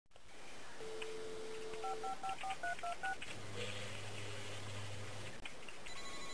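Telephone dial tone, then a quick run of about eight touch-tone keypresses being dialed, each a short two-note beep. A low steady tone follows for about two seconds.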